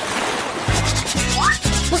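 A swoosh transition sound effect: a rushing noise that dies away within the first second. Background music with a low, steady beat then comes in.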